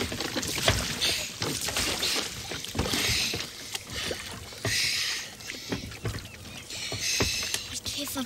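Wooden oars of a rowing boat dipping and splashing in the sea about every two seconds, with short wooden knocks between strokes.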